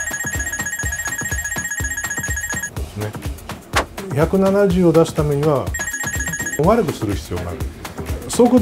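An electronic ringing tone, a trilling phone-like bell sound effect, plays for about three seconds and again briefly about six seconds in, over background music with a steady beat.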